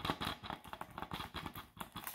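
Fingernails tapping rapidly on a plastic DVD case: a quick, irregular run of many small clicks.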